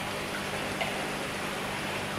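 Steady rushing, trickling water noise with a low, even hum underneath, from aquarium filtration and circulation pumps.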